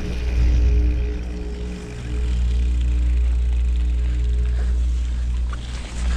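Wind rumbling over the microphone of a camera carried on a mountain bike rolling down a dirt track. A few steady held tones run over the rumble, which dips briefly about two seconds in and again near the end.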